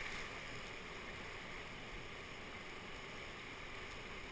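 Steady, faint rushing of whitewater rapids.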